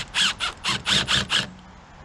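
Cordless drill-driver driving a screw into a pressure-treated wooden stake in a quick run of about seven short pulses, stopping about a second and a half in.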